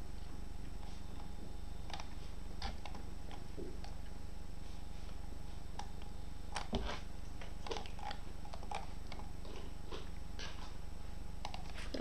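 Steady low hum with scattered soft, brief clicks from a computer mouse as web pages are opened.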